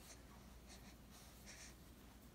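Near silence: room tone with two faint, brief rustles about a second apart, a hand brushing a baby's cloth sleeve.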